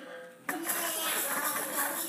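Baby's electronic learning toy setting off a sound abruptly about half a second in, a bright, buzzy electronic sound that carries on after it.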